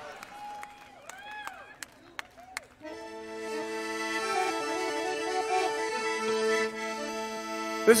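A few whistles rise and fall, with scattered clicks. About three seconds in, an instrument with a reedy, accordion-like tone starts holding a sustained chord, with one inner voice stepping slowly up and down.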